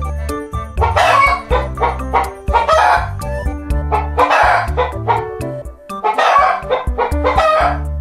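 Roosters calling in about five loud, rough bursts, each under a second, over background music with steady low notes.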